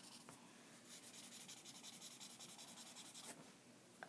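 Faint scratchy rubbing of a paper blending stump worked back and forth over graphite shading on sketchbook paper; it stops a little before the end.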